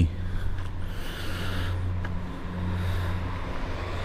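Steady low hum of the Audi A4's 1.8-litre turbocharged four-cylinder petrol engine idling.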